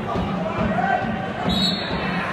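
Football stadium crowd: a regular beat of low thumps, a little over two a second, with shouting voices. Near the end a short, high whistle blast, a referee stopping play for a foul.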